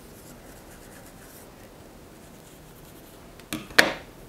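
Wide-tooth comb drawn through the synthetic fibres of a wig: a faint scratchy rustle. Near the end come two sharp clicks, the second the louder.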